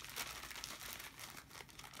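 Faint crinkling and rustling of items being handled, a run of small crackles.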